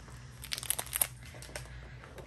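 A small plastic mystery bag crinkling as it is handled and opened, a few light crackles clustered about half a second to a second and a half in.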